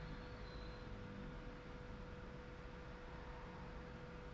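Faint room tone: a steady low hiss and rumble with a constant thin hum.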